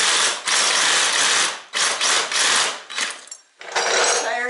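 Cordless reciprocating saw running in about four short bursts, its blade sawing through the rubber of an old lawn tractor tire next to the steel rim; it stops a little before the end.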